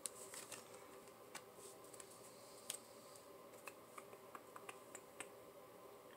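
Faint, sharp clicks and light snaps of tarot cards being handled, drawn from the deck and turned over, scattered irregularly over a low room hum, the strongest right at the start and near the middle.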